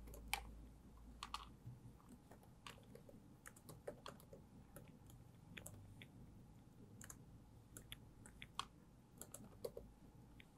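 Faint laptop keyboard typing: scattered, irregular keystrokes.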